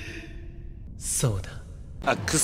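A single breathy sigh about a second in, its pitch falling steeply, from an anime character's voice.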